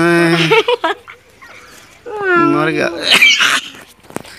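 A man's voice making two long, wavering, drawn-out vocal calls, then a short high squeal near the end.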